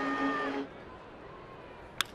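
Low ballpark crowd ambience, opening with a held tone of several steady notes that stops about half a second in, and ending with a single sharp crack of a bat hitting a pitched baseball.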